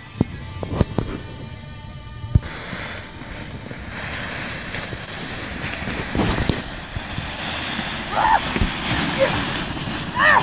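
Background music with a few sharp knocks for about two seconds, then it cuts off. Loud crunching and rustling of dry fallen leaves follows as someone scrambles through the leaf litter, with a short vocal exclamation near the end.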